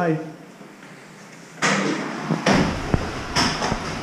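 A toilet stall door being handled: a quiet moment, then a series of knocks, bangs and rattles starting about a second and a half in, with a couple of sharp clicks near the end.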